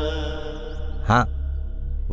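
Background film score: a steady low drone under a single held, chant-like note that fades away over the first second.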